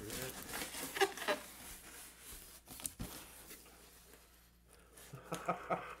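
Cardboard box flaps and packing being pulled open and handled, rustling and scraping, with a few sharp knocks around the middle.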